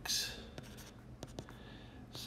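Stylus writing on a tablet screen: a short scratchy hiss at the start, then a few faint light taps and clicks as a short line of handwriting is put down.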